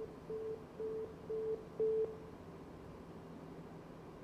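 A run of about five short electronic beeps at one steady pitch, evenly spaced about half a second apart, stopping about two seconds in.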